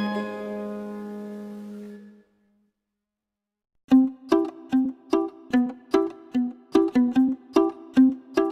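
Background music: a sustained, ambient track fades out over the first two seconds, then after a short silence a plucked-string tune starts a little before four seconds in, its notes coming two or three a second.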